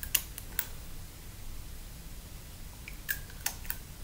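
Small sharp clicks of little plastic or metal pieces handled at close range: a quick run of three or four in the first half-second, then another short run of clicks a little after three seconds in.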